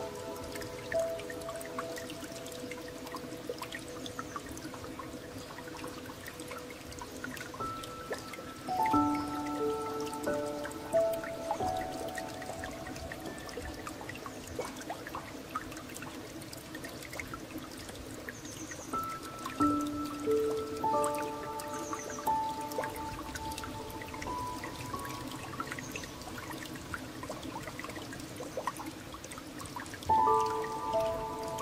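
Slow, gentle piano music in sparse phrases of held notes, over a steady background of running water with small drips.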